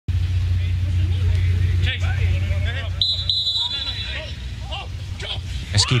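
A referee's whistle blown about three seconds in, a short high blast broken once, over scattered shouts from players on the pitch and a steady low hum.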